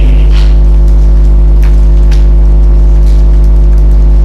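Loud, steady electrical mains hum at 50 Hz with its overtones, carried by the microphone and sound system's audio chain, with a few faint ticks.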